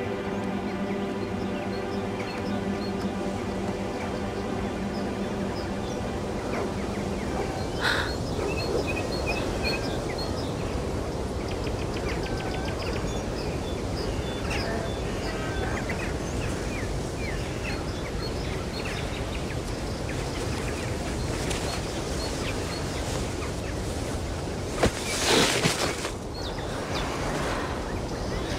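Outdoor ambience of small birds chirping over steady background noise, while music fades out over the first several seconds. Near the end a short, louder noisy burst stands out.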